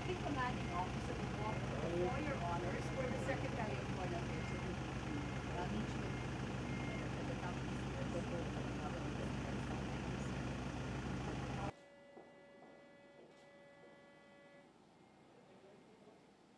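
A vehicle engine idling steadily under the murmur of people talking. About twelve seconds in it cuts off abruptly to quiet room tone with a faint steady hum.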